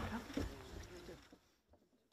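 Faint murmur of voices with a soft knock about half a second in, fading out to dead silence about a second and a half in as the audio cuts off.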